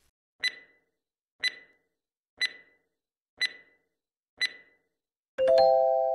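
Quiz countdown sound effect: five short clock-like ticks, one a second, then near the end a ringing chime that slowly fades, marking the reveal of the answer.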